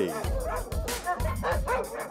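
A dog yipping several times in short, high calls over background music with a steady low beat.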